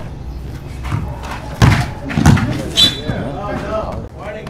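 Basketball game play with two sharp thuds about a second and a half and two seconds in, followed by players' voices calling out.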